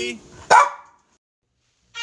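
A cockapoo gives a single short bark about half a second in.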